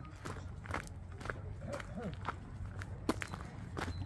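Footsteps on a gravel path, about two steps a second.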